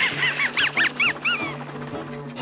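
Cartoon duck honks: a quick run of about seven rising-and-falling calls in the first second and a half, over background music.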